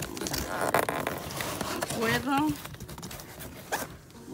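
Plastic packing tape on the seam of a cardboard box being pulled and scratched at to get the box open, a rasping, ripping sound through the first couple of seconds.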